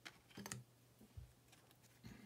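Trading cards, some of them stiff clear acetate, being handled and set down on a pile: a few faint clicks and taps, the loudest about half a second in, and a soft low thump just after one second.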